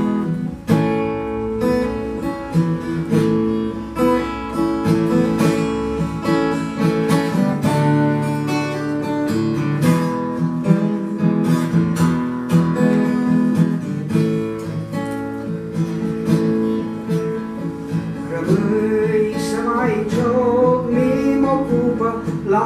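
Acoustic guitar playing the introduction to a song, strummed and plucked chords at a steady pace.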